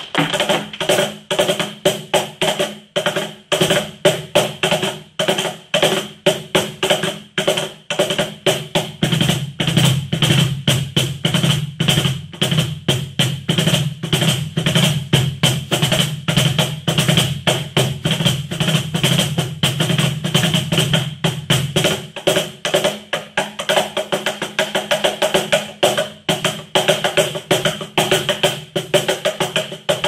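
Cajon played with the hands in a fast, even rhythm of slaps and taps on its wooden front. Deeper bass strokes sound more heavily through the middle stretch.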